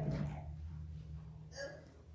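A quiet pause in a small room with a steady low hum. A short vocal catch of breath comes about one and a half seconds in.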